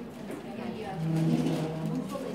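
Overlapping chatter of several people talking at once, with no single clear speaker. In the second half a steady low hum, likely a held voice, lasts about a second and is the loudest part.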